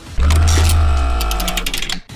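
Synthesized transition sting: a sudden deep bass hit with a held electronic tone and fast, even ticking over it, fading away toward the end.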